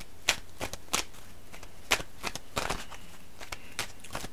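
A tarot card deck being shuffled by hand: the cards tap and snap against each other in a few sharp, irregularly spaced clicks.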